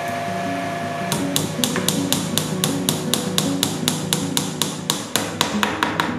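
Rapid, even hammer taps driving a shaved bamboo peg into a hole in a bamboo piece, about four or five strikes a second, starting about a second in. Background music plays underneath.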